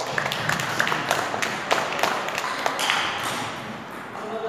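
Scattered clapping from a small group of people, dying away near the end, with the light taps of table-tennis balls from games in the background.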